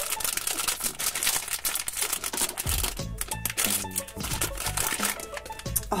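Pikmi Pops foil surprise pouch crinkling and rustling in the hands as it is torn open, most densely in the first half, over steady background music.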